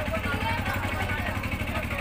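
Small engine idling with a steady low rumble, from an auto-rickshaw, under faint voices of onlookers.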